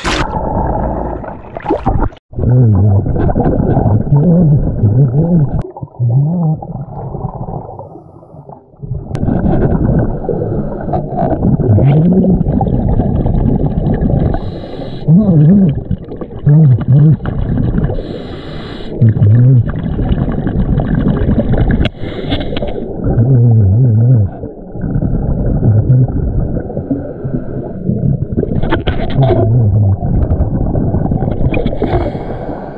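A splash as a camera goes under the water's surface, then muffled underwater noise of a scuba dive in a river: steady rushing from the diver's regulator breathing and bubbles, with low wavering tones coming and going.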